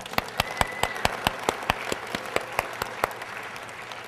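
Audience applauding, many hands clapping, dying down near the end.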